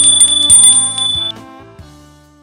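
A high bell ringing rapidly, a notification-bell sound effect, over background music. The ringing stops a little past halfway, and the music fades down.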